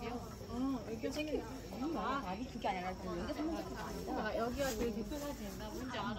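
Crickets chirring steadily in a high, thin tone, under several people talking at once.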